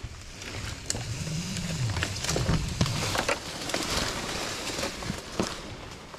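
Climbing rope sliding through a mechanical rope descender during a controlled descent, a steady rasping friction hiss with many small clicks and creaks from the rope and hardware.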